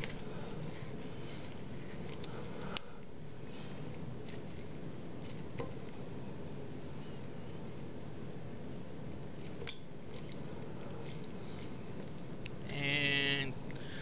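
Faint handling sounds, a few small clicks over a steady low background noise, as the plastic coupling nut of a braided toilet supply line is threaded and hand-tightened onto the fill valve shank. A short hummed voice sound comes near the end.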